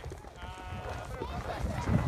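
Spectators' voices calling out in a few drawn-out, high-pitched shouts, fainter than the close-up cheering around them.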